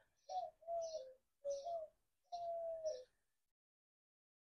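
A dove cooing: four coos in a row over about three seconds, the last one the longest, dropping in pitch at its end.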